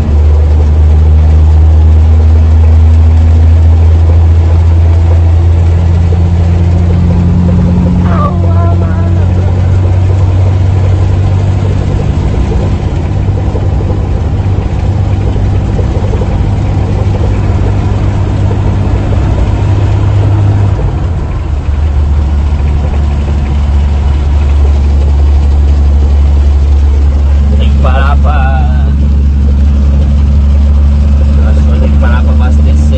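Heavy truck's diesel engine droning steadily, heard inside the cab while driving. Its pitch steps up about eight seconds in and drops back down a little after twenty seconds in.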